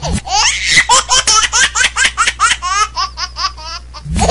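A baby laughing in a string of short, high squeals that quicken into rapid, thinner giggles near the end, over a steady low hum.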